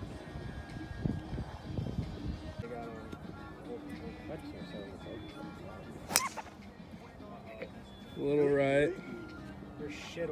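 A golf driver strikes a ball off the tee about six seconds in with a single sharp crack. About two seconds later a man lets out a short, drawn-out vocal shout, about as loud as the strike.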